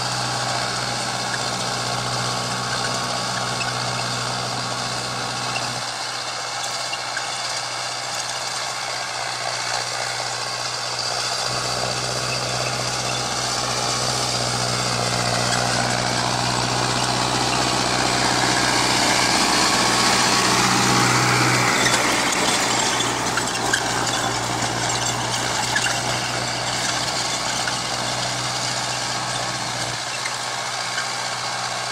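Mahindra 605 tractor's diesel engine running steadily under load as it pulls a rotary tiller through dry soil. The hum swells a little about two-thirds of the way through.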